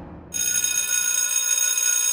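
A bell rings steadily as a sound effect, in the manner of an electric school bell. It starts about a third of a second in and keeps ringing for about two seconds. Before it, the fading tail of an earlier crash-like effect dies away.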